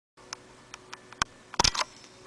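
Handling noise from a handheld camera: a few light clicks, a sharper click a little after one second, then a louder knock and rustle near the end as the camera is moved.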